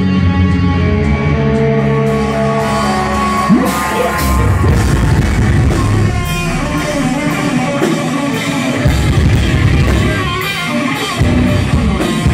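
Heavy metal band playing live and loud: distorted electric guitars and bass over a drum kit. Held chords ring for the first few seconds, a note slides up in pitch, then the band moves into faster, busier riffing with steady drum hits.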